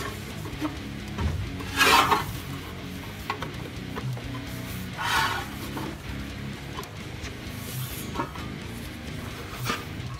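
Thin sheet steel being pressed by hand over a flat bar held in a vice, the sheet rubbing and scraping on the bar, with two louder scrapes about two and five seconds in. Background music plays throughout.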